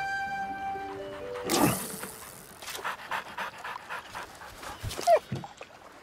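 Soft music fades out in the first second, then a whoosh, a run of light taps, and a short falling squeak about five seconds in, the loudest sound.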